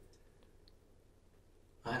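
Near silence: quiet room tone with a few faint clicks in the first second, then a voice begins just before the end.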